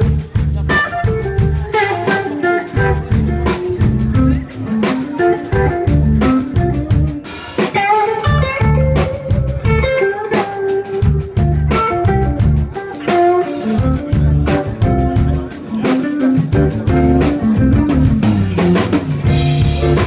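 Live blues band playing an instrumental intro: electric guitar lead over electric bass and a drum kit, with a steady beat.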